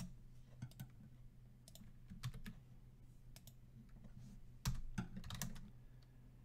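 Faint computer keyboard keystrokes, scattered clicks as shell commands are typed, with a louder cluster of key presses near the five-second mark.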